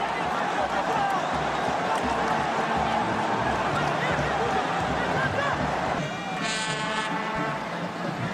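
Steady stadium crowd noise, a blend of many distant voices, from a football match broadcast. A short horn toot from the stands sounds about six seconds in.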